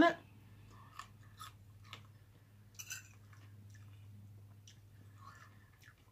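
Quiet chewing of a mouthful of lasagna: soft mouth sounds with a few faint clicks and smacks scattered through, over a low steady hum.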